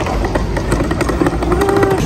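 Street traffic: a motor vehicle's engine running close by, a low rumble with a faint tone that rises slightly in the second half, and scattered light clicks.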